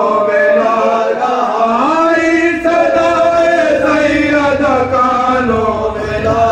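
Men chanting a marsiya, an Urdu elegy for the martyrs of Karbala, to a slow, drawn-out melody with long held notes.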